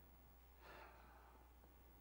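Near silence with one faint breath, a man drawing air at a microphone, a little over half a second in, over a low steady hum.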